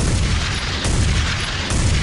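A loud, dense burst of rapid gunfire, a sound effect dropped into a hip-hop track while the beat's bass cuts out.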